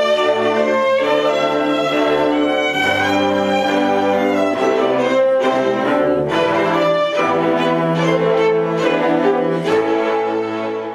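A string orchestra plays classical music, with violins leading over lower strings. The music is made of sustained bowed chords that change every second or so.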